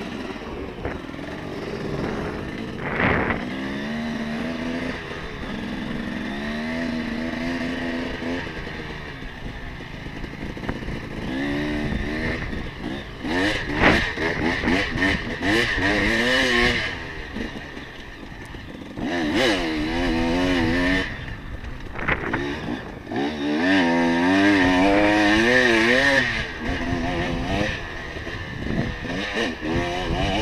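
Dirt bike engine revving up and dropping back repeatedly as the bike is ridden hard around a motocross track, with steady rushing noise underneath.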